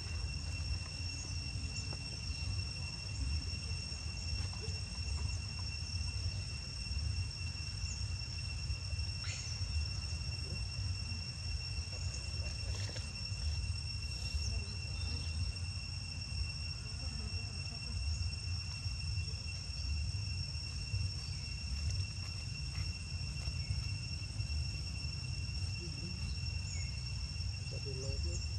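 Outdoor insects, such as cicadas or crickets, drone in one steady, high, even tone over a steady low rumble, with a few faint short chirps or clicks in the middle.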